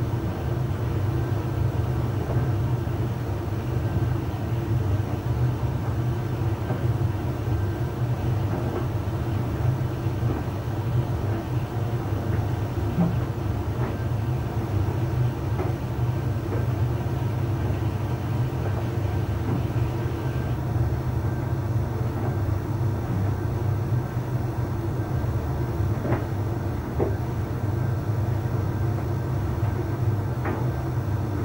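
Arçelik 3886KT heat-pump tumble dryer running, with laundry tumbling in the drum: a steady low hum that keeps an even level throughout. A faint higher hiss drops out about two-thirds of the way through, and a few faint ticks come near the end.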